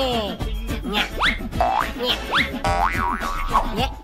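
Cheerful cartoon background music with springy boing sound effects: several quick upward pitch glides and a wobbling up-and-down glide in the second half.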